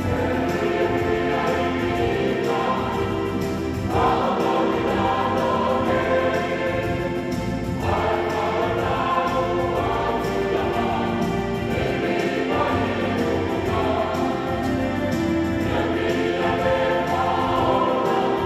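Mixed church choir of women and men singing a Samoan hymn in parts, in long held chords, with a new phrase beginning about every four seconds.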